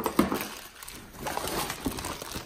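Clear plastic bag crinkling and rustling as it is handled and drawn out of a fabric tool bag, with one louder rustle just after the start.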